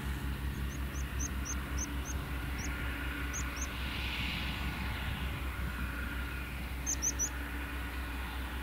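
Grimme Varitron 470 TerraTrac self-propelled potato harvester working in the field, heard from a distance as a steady low engine drone with a fast, even throb. Short high bird chirps come and go over it, with three quick ones near the end.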